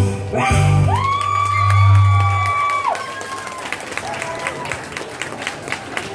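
A song with backing music ends on a long held note about three seconds in, then an audience claps and cheers.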